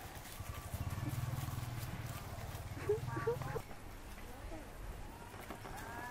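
Domestic pig grunting low and continuously for about three seconds while rooting in leaf litter, stopping abruptly, with two short rising squeaks just before the end.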